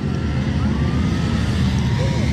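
Steady, loud outdoor noise rumbling low, like wind on the microphone and a crowd, with faint rising whines of distant engines revving.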